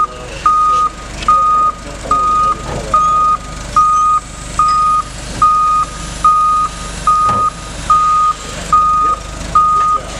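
Forklift reversing alarm beeping steadily at one pitch, a little more than once a second, over the forklift's engine running as it backs away.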